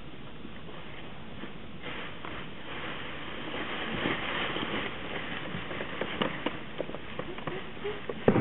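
Several people's footsteps shuffling and crunching through a layer of dry leaves on a stage floor, starting about two seconds in and growing louder, with a few sharper knocks near the end.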